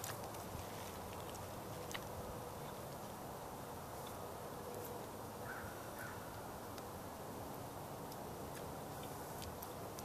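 Quiet, steady outdoor background noise with a few faint ticks and no distinct sound event.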